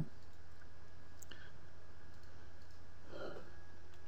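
A single faint computer mouse click about a second in, over a steady low hum.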